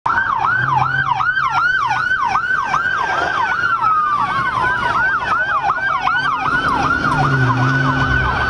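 Police vehicle sirens: a fast yelp sweeping up and down about three times a second, overlaid by a second siren's slower wail that glides down partway through, with a low engine hum beneath.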